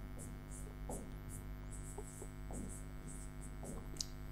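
Faint scratching of a pen writing in short strokes, about three a second, on an interactive whiteboard, over a steady electrical mains hum.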